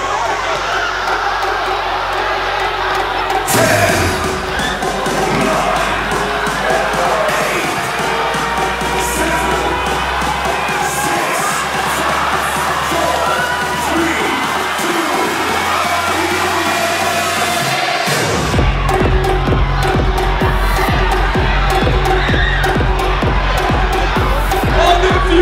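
A gym crowd cheering and shouting over DJ music played through the PA. Held bass notes come in a few seconds in, and a steady beat starts near the end.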